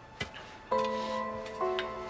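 Dramatic TV underscore music: a sharp click, then a sudden held chord of bell-like synthesized notes, and a second chord on slightly different notes about a second later.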